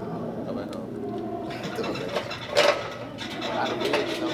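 Low, indistinct voices and murmur in a gym, with one short, loud sound about two and a half seconds in.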